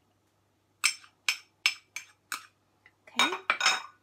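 Five quick, evenly spaced clinks of a small ceramic bowl against a metal spoon and china, as the last of the olive oil is tapped out onto the salad.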